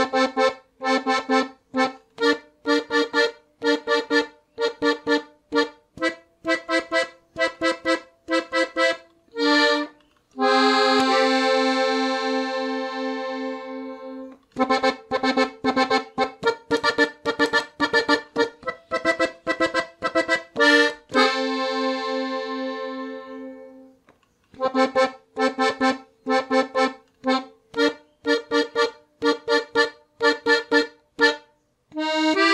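Piano accordion playing a slow melody in F on its treble reeds, in two-note chords: short detached notes about two a second, broken twice by a long held chord that slowly fades.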